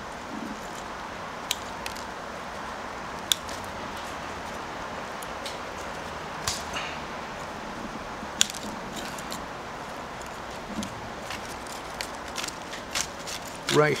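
Bonsai pruning scissors snipping cedar shoots: several sharp snips a couple of seconds apart over a steady background hiss.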